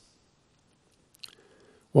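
A pause in speech: about a second of near silence, then a few faint mouth clicks, like a lip smack, before the speaker's voice resumes at the very end.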